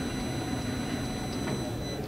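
A steady low hum with faint background room noise and no distinct events.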